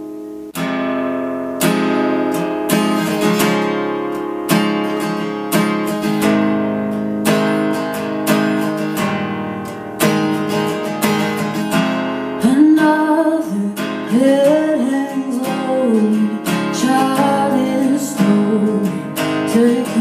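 Steel-string acoustic guitar strummed in a steady, repeating chord pattern. A woman's singing voice joins about twelve seconds in, over the strumming.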